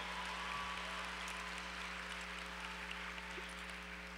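Faint, scattered audience applause dying away, over a steady low electrical hum from the hall's sound system.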